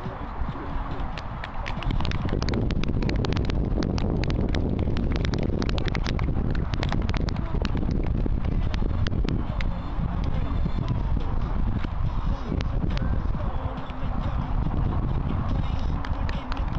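An audience clapping, many quick irregular claps, busiest in the first half and thinning out after about ten seconds, over a steady low rumble.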